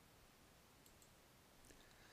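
Near silence, with a few faint computer mouse clicks about a second in and again near the end.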